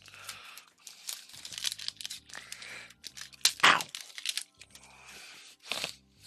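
Foil Pokémon card booster pack being torn open by hand, the wrapper crinkling in short, irregular rips.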